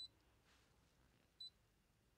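Two short, high key beeps from a Brother ScanNCut SDX330D's touchscreen as options are tapped with a stylus, one right at the start and one about a second and a half in, in otherwise near silence.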